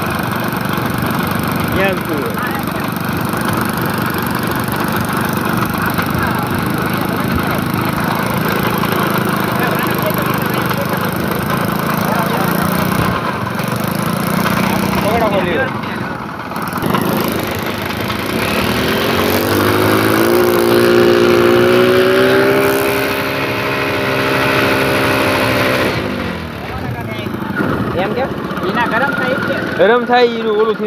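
Small motorcycle engine running a homemade propeller rig, with the propeller churning and splashing the water. About two-thirds of the way in the engine revs up and holds a higher pitch for several seconds, then drops back.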